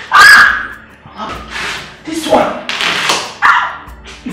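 A person's voice in short, uneven bursts of exclamation or muttering, the loudest just after the start.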